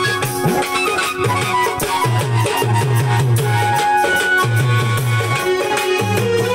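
Live instrumental folk music: an electronic keyboard plays the melody over a steady, repeating drum beat, with no singing.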